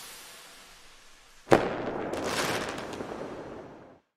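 Logo-reveal sound effect: a fading swish gives way to a sudden hit about a second and a half in, followed by a crackling, fizzing tail that dies away.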